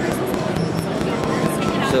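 SonicWare ELZ-1 synthesizer playing notes through its tape delay and reverb, with short held tones and gliding pitch. Crowd chatter runs behind it.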